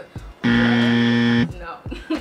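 A game-show style buzzer sound effect: one loud, flat buzz about a second long that starts and stops abruptly, the kind used to mark a wrong answer.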